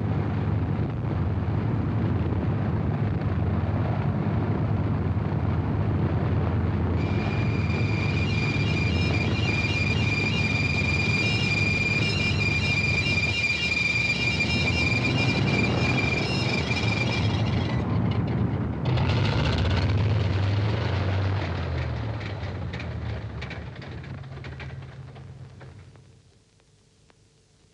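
Twin engines of a Vickers Wellington bomber running with a steady low drone, which fades away near the end. A high, steady whine lies over it for about ten seconds in the middle.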